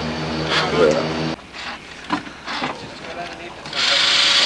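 A car engine idling steadily, with a regular pulse, that cuts off abruptly about a second in. After it come quieter outdoor sounds with a few light knocks, and a loud hiss starts near the end.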